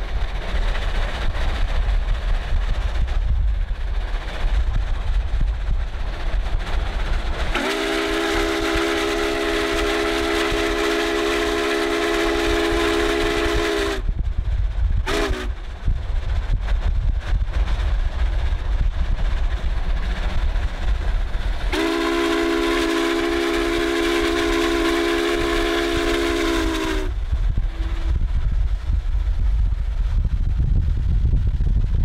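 Union Pacific 844's steam chime whistle sounds a chord in three blasts: a long blast of about six seconds, a short toot, then another long blast of about five seconds. All three ride over a steady low rumble.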